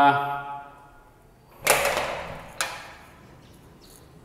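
A glass-panelled door being opened: a clattering burst about a second and a half in, then a sharper knock about a second later.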